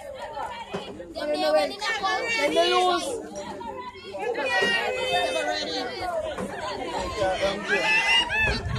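People chattering: several voices talking over one another, with no words standing out.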